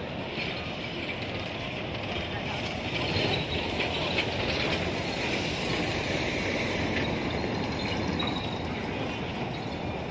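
Busy city street at night: a steady wash of traffic noise, a little louder a few seconds in, with voices of passers-by mixed in.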